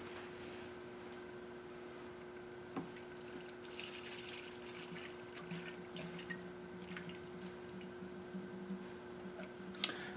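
Antifreeze coolant poured from a plastic jug into a Saab 9-3's coolant expansion tank, a faint trickle of liquid as the cooling system is topped off, with a light knock about three seconds in.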